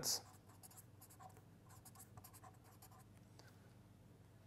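Pen writing on paper: faint, short scratchy strokes as letters are written, thinning out near the end.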